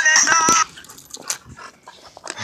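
Background music that cuts off about half a second in, followed by quieter scuffling and scattered clicks from dogs tugging at a stick, with faint dog noises.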